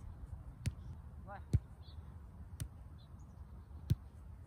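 Soccer ball being passed back and forth on grass: four sharp thuds of foot striking ball, the loudest about one and a half seconds in and just before the end.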